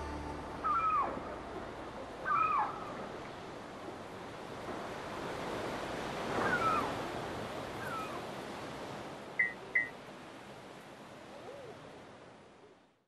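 Steady wind-like hiss with four short, gliding animal cries spread over it, followed by two quick chirps; the hiss fades away at the end.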